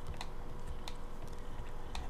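A few isolated clicks from working the computer's keys and mouse, over a faint steady room hum.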